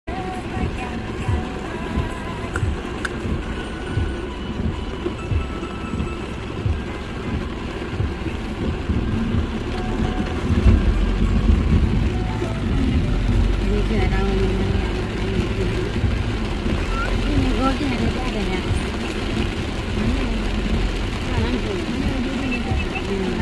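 Heavy rain heard from inside a car's cabin, with the car's low engine and road rumble growing much louder from about ten seconds in as the car moves off.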